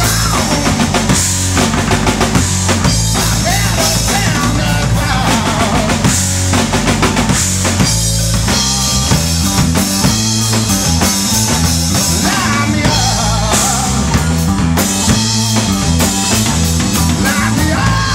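Live rock band playing loud and steadily: drum kit, bass guitar and electric guitar, with a male voice singing near the start and again near the end.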